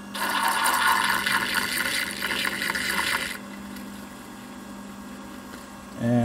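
Carbide tool being lapped on a slow-turning diamond lap: a scratchy hiss of carbide rubbing on the diamond face that lasts about three seconds, then stops. The grinder's gear motor hums steadily underneath.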